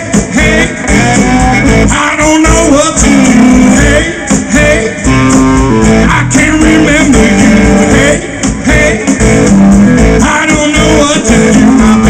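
Live blues band playing an instrumental passage, with a lead guitar over bass and drums.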